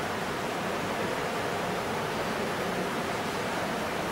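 Steady hiss of background noise, even throughout, with no distinct knocks or strokes standing out.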